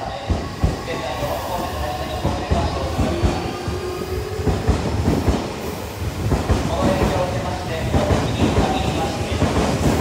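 Odakyu 3000 series electric train pulling out of a station and gathering speed, its wheels knocking over rail joints in a quickening series of clacks under the running noise. The train was being withdrawn from service over a reported abnormal noise.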